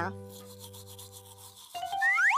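Quick, even scrubbing strokes of a small toothbrush brushing teeth, heard faintly under a fading held chord of children's music. Near the end a held tone and a rising whistle-like glide come in.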